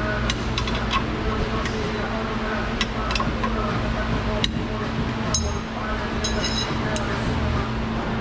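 Sharp metallic clicks and clinks of a box-end wrench on the lock nut of a rear-suspension toe adjustment cam bolt as the nut is tightened to lock the toe setting, with a couple of short ringing clinks a little past the middle. A steady hum from the shop runs underneath.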